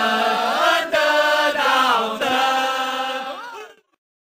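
A group of voices singing a union campaign song in long held notes, with a few sliding changes of pitch; the singing cuts off abruptly just before the end.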